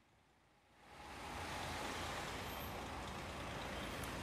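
Near silence, then about a second in, a steady hum of street traffic fades in and holds.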